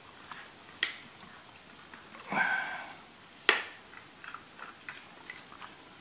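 Soldering-iron tip working on a polyethylene bottle while smearing down melted plastic weld: two sharp clicks about three seconds apart, a short scraping sound between them, and a few light ticks.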